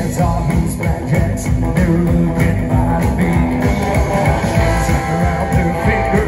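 Live rock and roll band playing through a PA: electric guitar and a singer over a steady drum beat.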